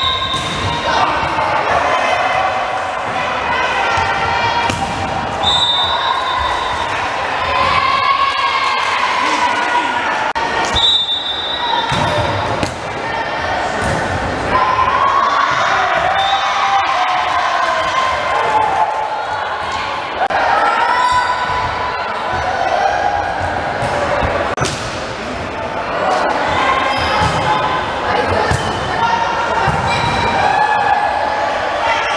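Indoor volleyball play echoing in a gym: the ball being struck again and again, with players and spectators shouting and cheering over it. A short, high referee's whistle sounds three times in the first half.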